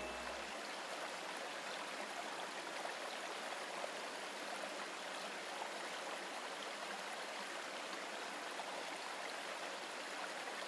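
Steady sound of running stream water, an even wash with no rhythm or change throughout.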